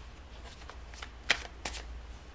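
A deck of tarot cards being shuffled and handled by hand: a few sharp papery flicks and snaps of cards, the loudest a little past halfway.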